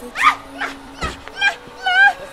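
A woman's high, wavering cries of emotion, a string of short rising and falling wails, over background film music.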